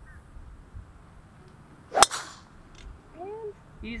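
A driver striking a golf ball off the tee: one sharp crack about two seconds in, with a short ringing tail.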